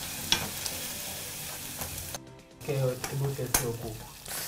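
Chicken pieces frying in a saucepan, stirred with a wooden spoon, with a steady sizzle. The sizzle cuts off suddenly about two seconds in. A brief hum-like voice and a sharp click follow.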